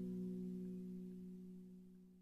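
The last held chord of a background song dying away, a few steady notes fading out steadily.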